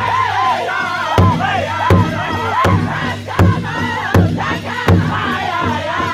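Powwow drum group: several men striking a large hide drum together in a steady beat, about four strokes every three seconds, while men and women sing in high, wavering voices over it.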